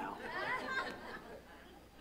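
Faint chatter of several voices from the audience, dying away after about a second and a half.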